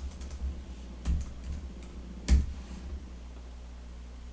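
Computer keyboard being typed on: a few irregular keystrokes, one a little past the middle louder than the rest, over a low steady hum.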